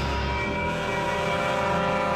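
Dark background music: a sustained, droning chord of many steady tones held without a break.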